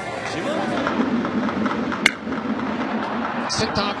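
Ballpark crowd noise, cut by one sharp crack of a wooden bat hitting a pitched baseball about two seconds in.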